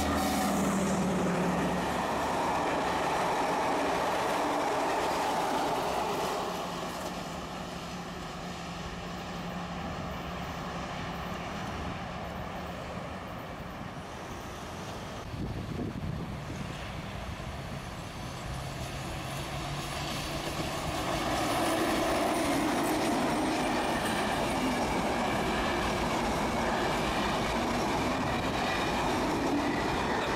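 A MÁV M41 diesel locomotive passes at the head of a passenger train, its engine running and the wheels rumbling over the rails. The sound then falls away, and from about two-thirds of the way through a train grows louder again as a MÁV V43 electric locomotive with its coaches approaches.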